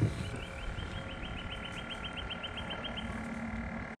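An animal calling in a rapid, even run of short chirps, about seven a second, for about three seconds, over steady high tones and a low muffled rumble.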